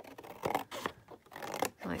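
Scissors cutting through thick cardstock: a few short, irregular snips.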